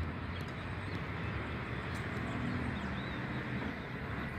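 Steady outdoor background noise, a low rumble typical of distant traffic. A faint humming tone runs through the second half.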